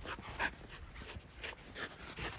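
A Samoyed panting in short, quick breaths as it runs up close through snow, its paws crunching the snow with each stride.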